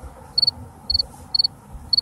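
A cricket chirping steadily: a high double chirp about twice a second, over a faint low hum.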